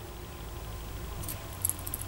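Butterfly knife (balisong) being turned slowly by hand, its metal handles and pivots giving a couple of faint clicks in the second half over a low steady hum.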